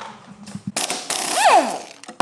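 Cordless impact tool run for about a second with a rattling, ratcheting sound, its motor whine rising and then winding down.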